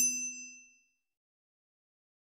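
A single bright metallic ding, a struck-chime sound effect, ringing with several clear tones and dying away within the first second.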